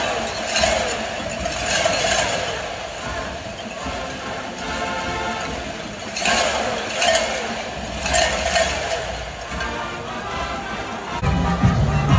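Cowbells clanging in repeated bursts from a stadium crowd, over band music.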